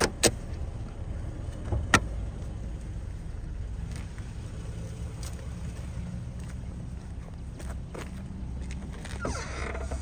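Toyota Mark II's non-turbo 1JZ-GE 2.5-litre inline-six idling steadily. Two sharp clicks come about a quarter second in and about two seconds in, and there is a creak near the end.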